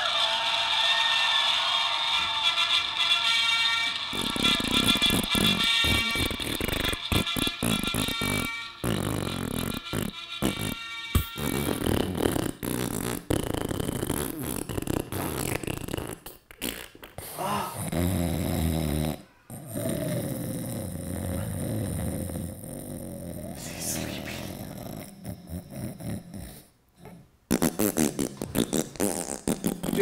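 A very long fart, sputtering and changing in pitch and texture, broken by several short pauses, played over music. A man laughs near the end.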